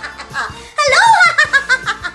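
A woman laughing in quick, rhythmic "ha-ha" pulses as a deliberate laughter-yoga exercise. The laughter is fainter at first and bursts out louder about a second in.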